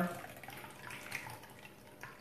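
Cranberry juice, sour apple schnapps and vodka being poured from a stainless steel cocktail shaker into a martini glass: a faint, steady trickle of liquid.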